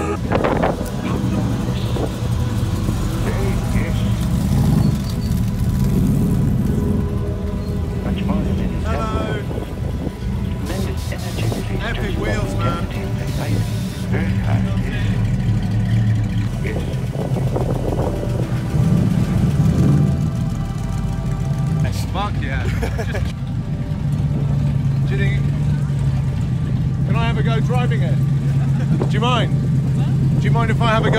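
Car engine running with a steady low-pitched sound, heaviest in the last several seconds, while people talk and music plays in the background.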